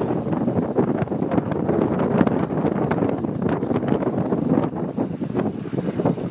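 Wind buffeting the microphone over water rushing and slapping against the hull of a WindRider 16 trimaran sailing through chop. There is a steady rushing noise with frequent short splashes of spray.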